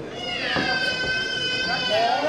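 A long, high-pitched vocal squeal, like a drawn-out meow, that dips slightly at the start and then holds level for about a second and a half. Another voice slides upward near the end.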